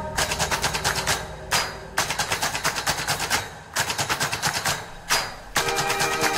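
Rapid, even drum hits at about ten a second, in runs broken by three short gaps, from the song's pounding percussion section. Sustained notes come back in near the end.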